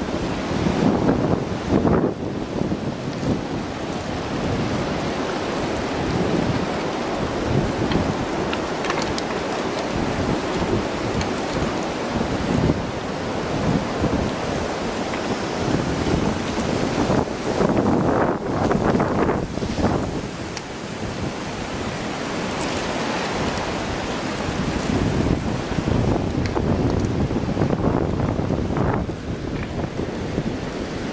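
Wind buffeting the microphone: a loud, rushing roar that swells and eases in gusts.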